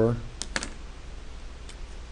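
A quick run of three light clicks about half a second in, with one fainter click near the end. These are the small sounds of a pen being picked up and handled on a desk, over a steady low electrical hum.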